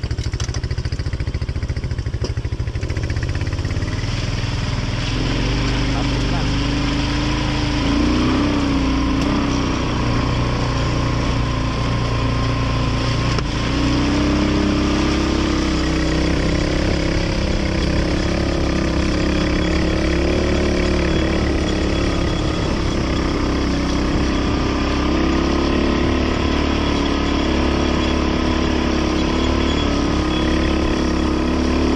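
ATV engine running steadily under way, its pitch wavering up and down with the throttle.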